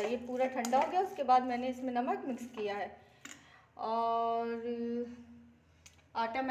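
A woman speaking Hindi for about three seconds, then a steady held hum of about a second and a half.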